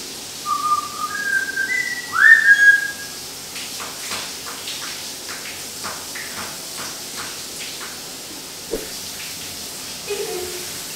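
Whistling: four short whistled notes stepping up in pitch, then a louder whistle that swoops upward and holds. It is followed by a run of faint clicks, about three a second.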